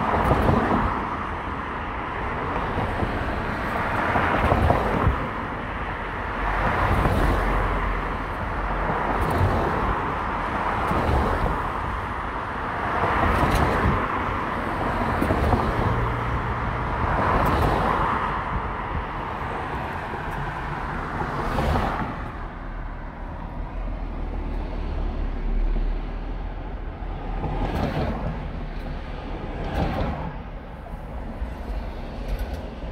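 Car driving in city traffic: steady road and tyre noise with swells every couple of seconds as vehicles pass close by. It turns quieter in the last several seconds as traffic slows to a stop.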